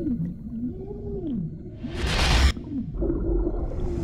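Slow, low moaning calls that glide up and down in pitch, like whale song, over a deep rumble in a film soundtrack. A loud rushing whoosh cuts in about halfway through and stops abruptly.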